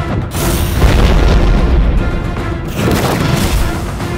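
A deep boom with a rushing hiss, starting just after the start and lasting about two and a half seconds, over dramatic background music: a sound effect for a magic energy blast.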